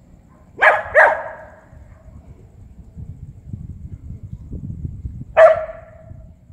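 Dog barking: two quick sharp barks close together, then a single bark near the end.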